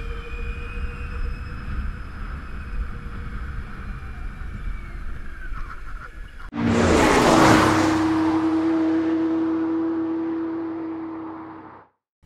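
Askoll eS3 electric scooter being ridden, heard as steady wind and road rush with a faint high electric-motor whine. About six and a half seconds in, a loud whooshing logo sting hits and leaves a held tone that fades out over about five seconds; this is the loudest sound.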